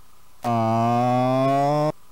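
Racetrack starting-gate horn sounding as the gates spring open for the start of a horse race. It comes on suddenly about half a second in as one loud, steady horn note, rising a little in pitch, and cuts off sharply after about a second and a half.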